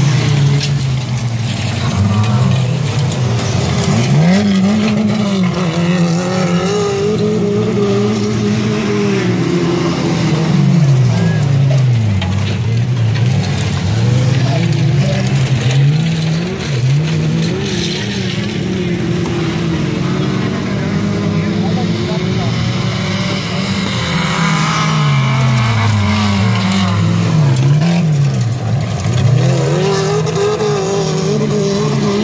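Several stock-car engines racing on a dirt track, their pitch rising and falling again and again as the cars accelerate and lift off.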